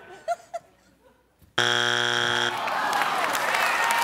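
Game-show strike buzzer sounding once for about a second, marking a wrong answer (the third strike), followed by the studio audience applauding.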